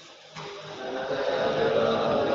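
A group of students reciting a memorised Arabic hadith together. Their voices start about a third of a second in and swell into a steady chorus.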